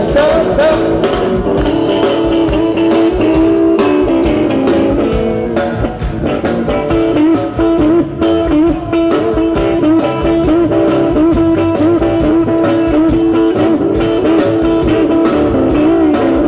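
Blues band playing live: guitar lines with bent, wavering notes over a steady beat.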